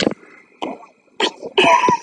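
A sharp knock at the start, then a few short breathy vocal sounds, the loudest and highest-pitched near the end, like a cough or laugh rather than words.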